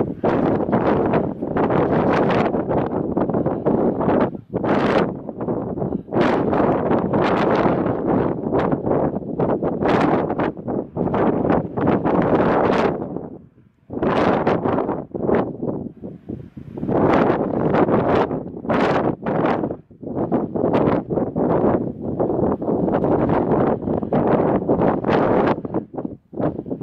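Strong mountaintop wind buffeting the camera microphone in loud, uneven gusts, with a brief lull about halfway through.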